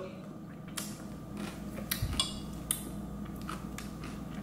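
A spoon clicking and scraping lightly against a blender jar while thick protein ice cream is eaten from it: a handful of short, light clicks over a faint steady hum.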